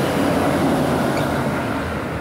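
Siemens SC-44 Charger diesel locomotive at the rear of the train passing close by. Its engine and wheels on the rails make a steady, loud rumble that eases slightly as it moves away near the end.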